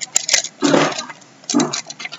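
Cardboard jigsaw puzzle pieces being handled and sorted on a floor: two sharp clicks near the start, then brief bursts of rustling clatter separated by a moment of near quiet.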